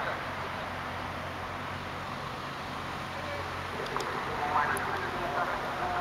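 Steady outdoor background noise with faint, distant voices of people talking, most noticeable near the end.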